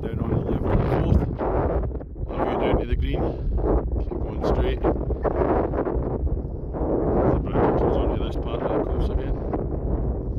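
Wind buffeting a phone microphone, a gusty rumble that swells and drops every second or so.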